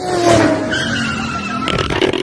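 A tyre-screech skid sound effect: a loud, noisy squeal whose pitch falls slowly over about two seconds.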